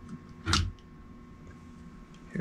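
A single short knock about half a second in, from handling the grease-packed CV joint and its boot clip in the bench vise; otherwise only faint background.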